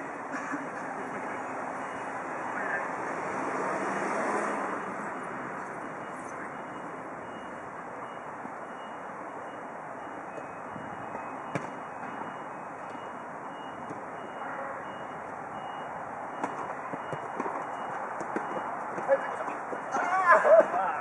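Futsal game in play: distant players' voices over a steady outdoor background rumble that swells for a moment in the first few seconds, with one sharp kick of the ball a little past halfway and a few lighter knocks near the end.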